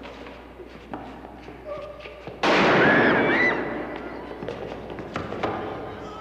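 Sound effects of a staged fight: scattered thuds and knocks of a struggle, then about two and a half seconds in a sudden loud bang that rings on and fades over a second or so.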